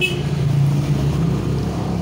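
A steady low motor hum, engine-like, holding an even pitch throughout.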